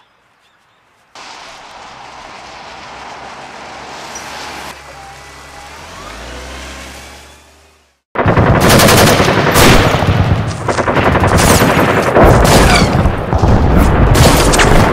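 A low rumbling noise swells for several seconds and fades out. About eight seconds in, loud battle sound starts suddenly: rapid machine-gun fire and gunshots in quick succession.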